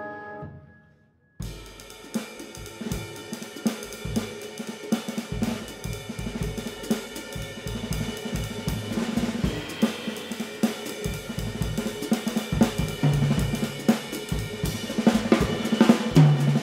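A held chord from the jazz big band fades out. A moment later, about a second and a half in, a jazz drum kit solo starts: snare, toms, bass drum and cymbals played with sticks, building in loudness.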